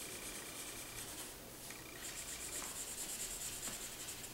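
Pink felt-tip marker scribbling on a paper printout in rapid back-and-forth strokes, a faint scratchy rub. It comes in two spells with a short pause about a second and a half in.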